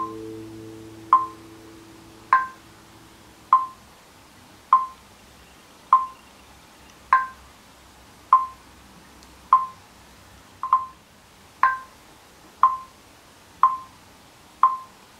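Metronome clicking steadily, about once every 1.2 seconds, with a brighter accent on every fourth beat. A nylon-string classical guitar chord fades away over the first few seconds.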